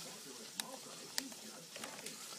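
Faint steady sizzle of chicken frying in oil, with two short light clicks about half a second and a second in.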